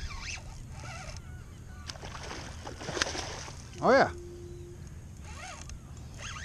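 A hooked fish thrashing and splashing at the surface right beside the kayak, a short burst of water noise about two to three seconds in.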